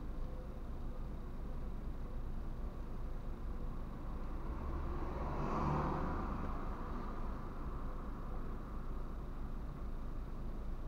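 Low, steady road-traffic and engine rumble heard from inside a car's cabin while it waits in traffic, with one passing vehicle swelling and fading about halfway through.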